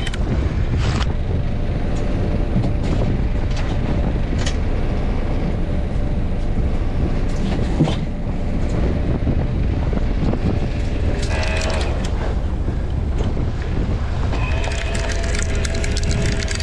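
Steady wind and boat noise on open water, with intermittent clicks and clatter from longline gear as the line is paid out from its reel and baited hooks go over the side. A couple of short whining tones come in past the middle and again near the end.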